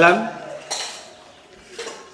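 A man's voice trails off just after the start, then two brief faint clinks: one about a second in that fades quickly, and a weaker one near the end.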